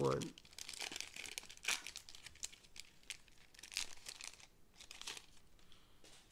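Foil wrapper of a 1992 Upper Deck baseball card pack crinkling in several short bursts as it is torn open and handled.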